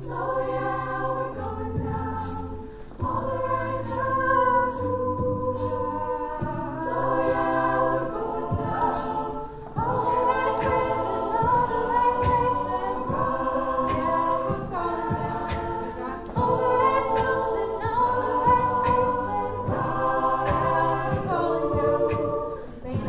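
Mixed a cappella choir singing sustained block chords that change every second or two, with vocal percussion keeping a steady beat.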